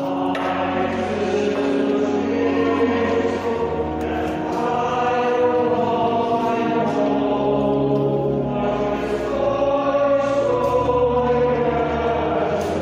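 Choir singing a slow hymn or chant in long held chords that change every second or two, with sustained low notes beneath.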